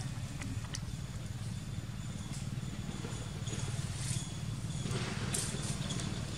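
Steady low rumble of outdoor background noise, with scattered faint clicks and a short rustle about five seconds in.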